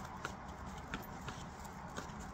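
A deck of tarot cards handled and shuffled, giving a few light clicks of cards knocking against each other, about three in two seconds, over a low steady room hum.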